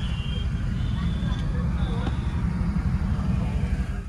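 Steady low rumble inside a car cabin in slow, stop-and-go traffic, with a few short, faint high tones in the background.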